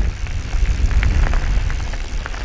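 Mountain bike rolling down a gravel road: steady wind rumble on the helmet camera's microphone, with the crunch and scattered clicks of tyres on loose gravel.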